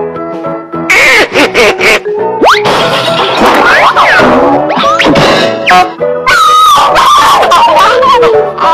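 Children's cartoon music with cartoon fight sound effects over it: boings, whistling glides sweeping up and down, and repeated bursts of crashing noise.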